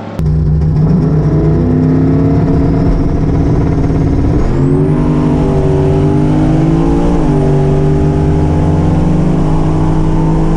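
Single-turbo LS V8 in a Camaro launching at full throttle on a drag pass, heard inside the cabin. The engine note comes in suddenly at the launch and climbs, drops at gear changes about four and a half and seven seconds in, then holds steady at high revs.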